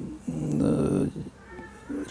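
A man's voice holding a drawn-out hesitation sound, a filled pause like "uh" lasting most of a second, followed by a short quiet gap.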